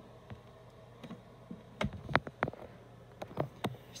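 A few sharp clicks and knocks of a plastic telephone being handled, a cluster of them about halfway through and a few more near the end.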